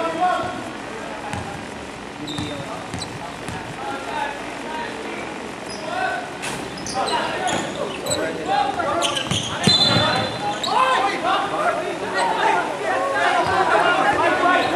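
Basketball bouncing on a hardwood gym floor during a game, with sharp thuds and a few short high squeaks, among players' shouts that echo in the hall.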